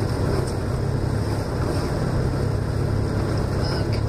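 Steady in-cabin noise of a car driving on a snow-covered road: a low engine and drivetrain drone under the hiss of the tyres.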